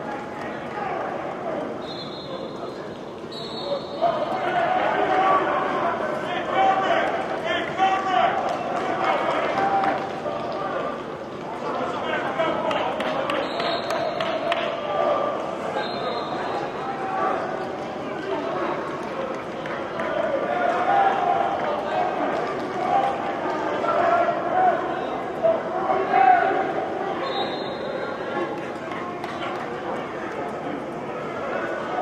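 Indistinct shouting and talking of many men, with thuds of movement, echoing in a large indoor football practice hall, as coaches and players call out during drills. Several brief high-pitched tones sound through it.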